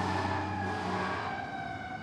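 An emergency siren holding a steady high tone that slowly sinks in pitch, over a low steady hum.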